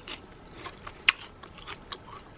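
Chewing and crunching a piece of raw yellow pepper: a few sharp crunches, the loudest about a second in.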